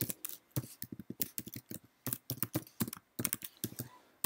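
Typing on a computer keyboard: a run of quick, irregular keystrokes with a couple of short pauses.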